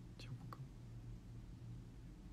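Quiet room tone with a steady low hum. A soft breathy hiss, like a whispered sound or breath, comes just after the start, followed by a faint click about half a second in.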